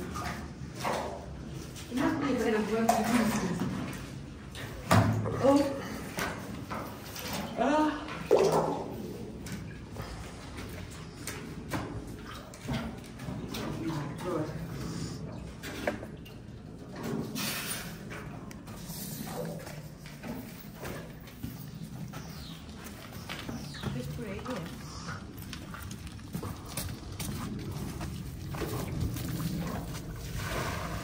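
Voices without clear words for the first several seconds, then a wheelbarrow loaded with muddy floodwater being pushed along.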